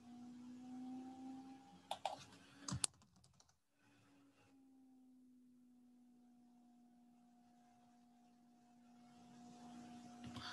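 A few faint computer keyboard keystrokes in the first three seconds, over a faint steady electrical hum, then near silence.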